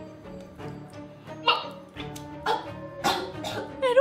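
A woman retching and coughing over a sink several times, the heaves growing louder in the second half, over background music.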